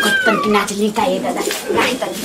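Women talking, with a single cat meow near the start, rising and then falling in pitch.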